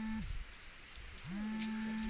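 A cow mooing: the tail of one low call at the start, then another long, steady low moo from a little past halfway through.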